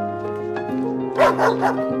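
Soft background music with long held notes; a little over a second in, a dog gives three quick, short yips.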